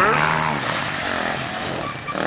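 Enduro motorcycle engine running as the bike rides through the course.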